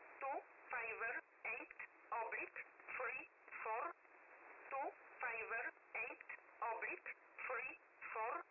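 Number station E11 on 7850 kHz: a voice reading number groups in English over shortwave radio, a word every half second or so, thin and narrow like a telephone line, with receiver hiss between the words.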